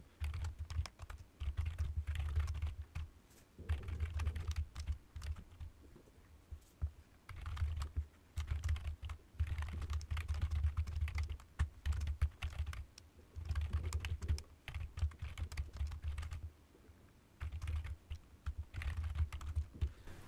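Typing on a computer keyboard: rapid key clicks in runs of a few seconds, broken by short pauses.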